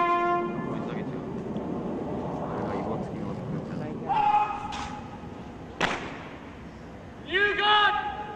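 Military parade ground: a held bugle note cuts off about half a second in. Shouted drill words of command follow near four seconds and again near the end, with a single sharp crack near six seconds.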